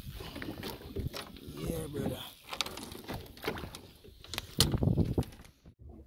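Irregular knocks and slaps of fish and line being handled over the side of a wooden fishing boat, loudest in a cluster near the end, with indistinct voices in between.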